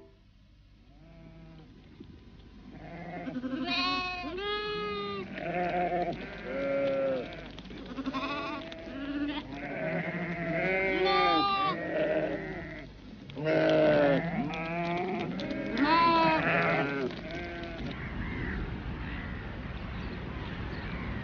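A large flock of sheep bleating, many calls overlapping, starting faintly about a second in, growing busier and dying away near the end.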